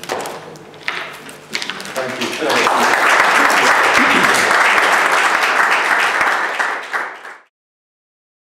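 Audience applauding, starting about two and a half seconds in and building to a steady clapping that cuts off suddenly near the end.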